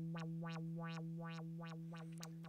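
Native Instruments Massive X software synthesizer holding one low note. The filter cutoff, driven by an envelope set to loop, snaps open and closes again over and over, so the tone brightens and dulls several times a second. The note slowly fades.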